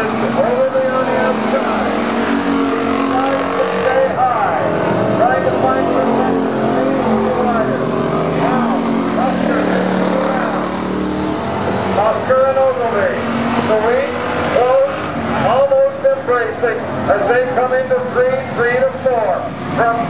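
A pack of thunder car race cars running hard on an asphalt oval, their engines overlapping and rising and falling in pitch as the cars rev and pass one after another.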